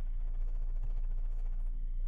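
A pause in the speech: only a steady low hum and faint room noise.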